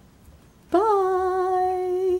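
A voice humming one held note: it comes in about two-thirds of a second in, scoops up in pitch, then holds steady for over a second.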